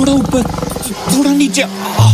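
A tiger growling low and steadily, with a man's wordless, frightened vocal sounds over it in the first second.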